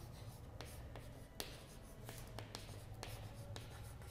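Chalk writing on a chalkboard: faint, irregular taps and scratches of the chalk stick as a word is written.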